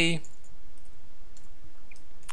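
A few faint computer keyboard keystrokes, sparse clicks in the second half, as a word is typed. A spoken word trails off at the very start.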